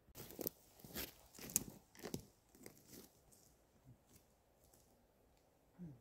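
Footsteps crunching through dry twigs and woodland litter at a walking pace, about two a second, loud for the first three seconds and then fainter. A short squeak falling in pitch near the end.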